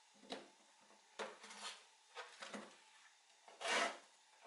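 Chef's knife cutting fresh pineapple into spears on a wooden cutting board: several short cuts and knocks of the blade against the board, then a longer, louder rasping stroke near the end.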